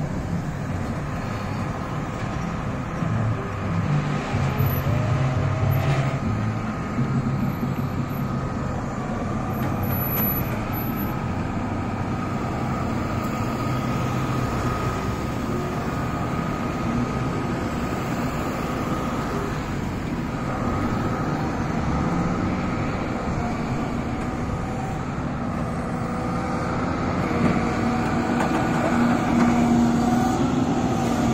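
Flatbed tow truck's engine running steadily, with road traffic passing.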